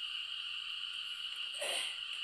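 Steady high-pitched chirring of night insects through a pause in the singing, with a brief burst of noise near the end.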